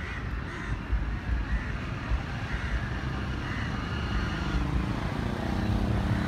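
Outdoor street ambience: a bird calls in short repeated calls about once a second over a low rumble. An engine hum builds near the end.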